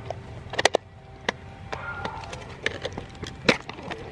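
Sharp plastic-and-metal clicks and knocks from a Polaroid 420 Land Camera being handled: its film back pressed shut after loading a pack of film, then the front cover opened. About six separate clicks, a close pair about half a second in and the loudest about three and a half seconds in.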